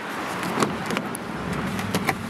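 A car's rear passenger door being opened and someone getting in, with a few short clicks and knocks from the handle and door over steady street noise.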